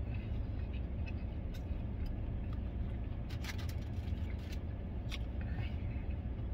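Steady low hum of an idling vehicle with its air conditioning running, heard from inside the cab. A few short clicks from chewing come through over it.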